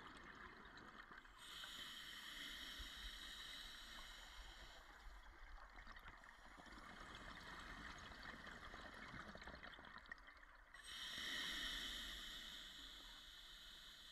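Scuba diver's breathing heard underwater: two long rushes of exhaled bubbles from the regulator, the first starting about a second in and a second, louder one toward the end, with a faint hiss between.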